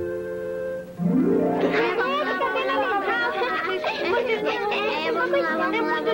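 Background film music holding a sustained chord, then from about a second in a group of children's voices chattering over the music.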